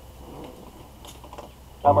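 A few faint clicks from the motorcycle's handlebar controls, then the bike's radio comes on suddenly near the end with a broadcast announcer talking.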